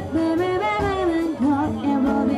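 Live jazz band with a woman singing a sliding melody line into a microphone, over bass and drums.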